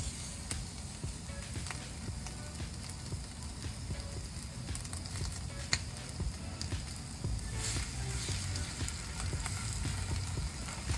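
Ribeye steak sizzling in hot oil on a cast-iron griddle, a steady hiss with scattered pops. The sizzle grows louder about seven seconds in as a salmon fillet goes down beside it.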